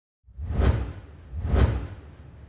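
Two whoosh sound effects about a second apart, each swelling up and fading away with a heavy bass end, accompanying an animated logo intro.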